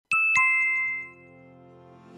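A two-note chime sound effect: a high ding and then a lower one a quarter second later, ringing out and fading within about a second and leaving a faint held tone.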